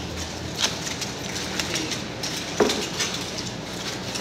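Scattered light clicks and rustles of food packaging and dishes being handled at a table, over a low steady hum.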